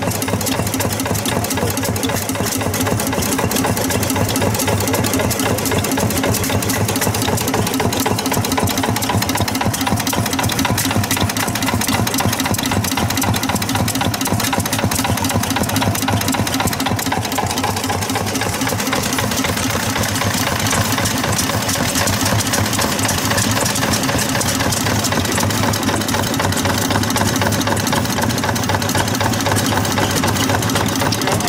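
NK5 single-cylinder hopper-cooled diesel engine running steadily at an even, rapid beat.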